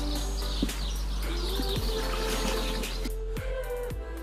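Background music with sustained notes playing over the outro.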